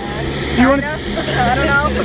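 A person's voice speaking briefly, over a steady low hum.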